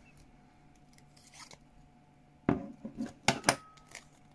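Handheld metal embossing pliers being squeezed shut on a paper disc and released. There is a near-silent squeeze, then a quick run of sharp clicks and clacks about two and a half seconds in, as the handles spring open and the embossed disc comes free.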